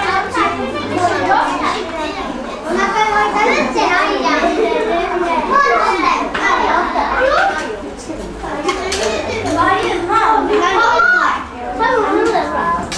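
Many children talking at once, a steady babble of overlapping young voices in which no single speaker stands out.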